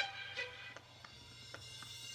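Faint instrumental backing music: a few short notes in the first second, then quieter.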